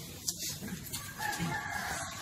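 A drawn-out bird call, such as a rooster's crow, lasting over a second and starting a little past a second in.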